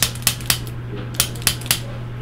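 A handheld chiropractic adjusting instrument clicking as it fires quick impulses into the upper back: six sharp clicks in two groups of three, about a quarter second apart. A steady low hum runs underneath.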